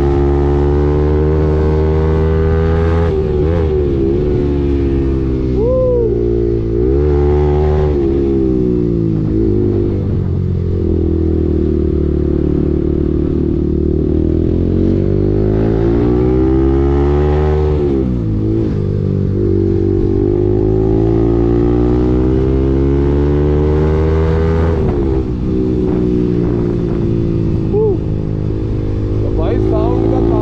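Bajaj Pulsar 200NS single-cylinder engine, breathing through an aftermarket full-system exhaust, on the move: it climbs in pitch as the revs rise and drops back at each gear change, several times over.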